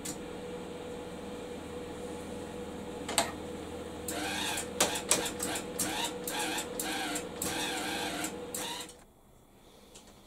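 Welder's wire-feed motor running with the torch trigger held, a steady mechanical hum. From about four seconds in, irregular crackling bursts join it, and everything stops about nine seconds in.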